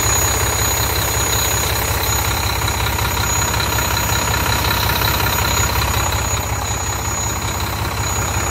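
A Volvo semi truck's diesel engine idling steadily, heard close up in the open engine bay, with a fast, even low rumble and a thin high whine over it.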